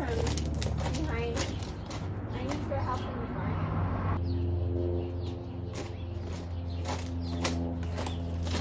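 Indistinct distant voices over a steady low hum.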